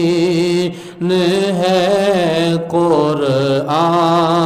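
A man's solo voice singing an Urdu naat in long, drawn-out held notes with wavering ornaments. It breaks off briefly for breath about a second in and again near three seconds.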